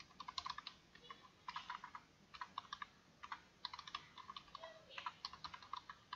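Computer keyboard typing: short runs of keystrokes with brief pauses between them.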